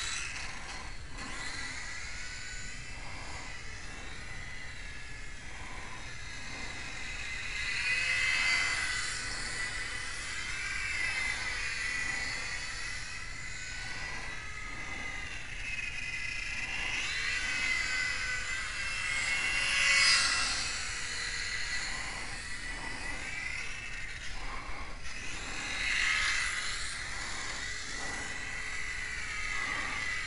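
Micro electric RC airplane's motor and propeller whining high in flight, swelling and fading and rising and falling in pitch as the plane passes by, with three louder close passes.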